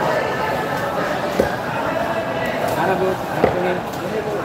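Two sharp chops of a long knife through tuna onto a wooden chopping block, about two seconds apart, over a steady background of many people talking.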